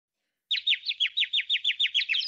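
Bird chirping: a fast, even run of short falling chirps, about six a second, starting half a second in.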